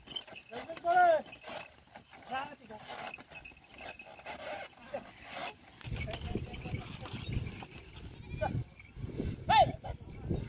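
Short, high, arching shouted calls from a cart driver urging on a pair of bullocks hauling a loaded cart. One comes about a second in, another a little later, and the loudest near the end. From about halfway a low rumble runs underneath.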